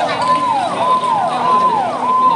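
Fire engine siren sounding in a fast repeating cycle, about two cycles a second: each cycle holds a high note, then slides down.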